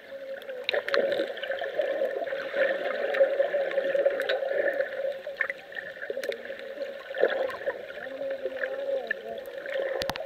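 Muffled underwater sound from a camera held under shallow sea water: a steady dull wash of moving water with scattered faint clicks and indistinct, muffled voices from above the surface.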